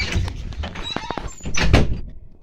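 Handling noise from a phone being moved and held close to the face: the microphone rubbing and bumping, with a few sharp clicks just past the middle and a louder rush near the end.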